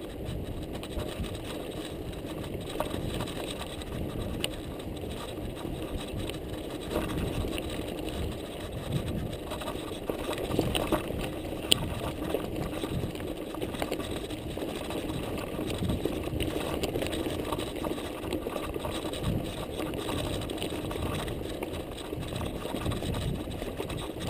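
Mountain bike ridden over loose, rocky singletrack, heard from a camera on the rider or bike: tyres crunching over stones and the bike rattling, with a steady hum and wind noise. There is one sharp click a little before the middle.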